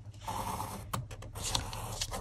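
Pencil scratching across kraft card as it traces around the edge of a cut-out window, with a couple of light clicks about a second in.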